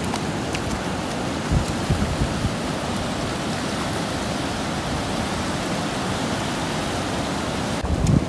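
Sea surf washing in over the shallows, a steady rush of breaking waves, with wind buffeting the microphone in low gusts.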